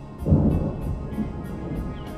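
A rumble of thunder breaks in sharply about a quarter second in, then fades slowly. It sounds over calm, sustained instrumental meditation music.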